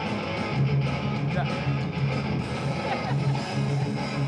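Rock band music: strummed electric guitars over repeated bass notes, dense and loud.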